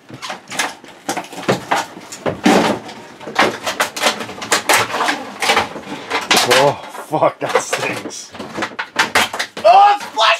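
A rapid, irregular run of knocks, rustles and clatter, with short snatches of voice mixed in.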